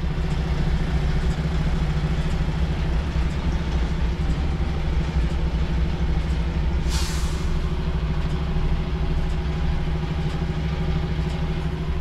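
Semi-truck's diesel engine running steadily, heard from inside the cab as the truck manoeuvres slowly. About seven seconds in there is one short burst of hissing air.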